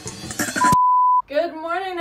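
A single steady electronic beep tone, about half a second long and the loudest sound here; background music cuts off as it starts, and a woman begins talking just after it ends.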